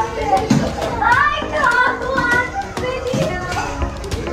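Children's high voices calling and chattering as they play, over the background talk of adults.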